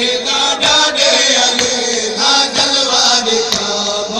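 Men's voices chanting a nauha, a Punjabi Shia lament sung in a repeated refrain, loud and continuous, with a few sharp slaps or claps scattered through it.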